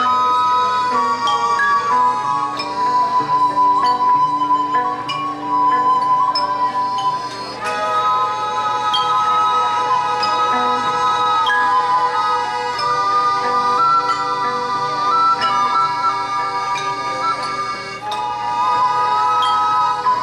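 Live band playing an instrumental passage: two flutes carry a melody of long held notes over xylophone, plucked violin, guitar and accordion.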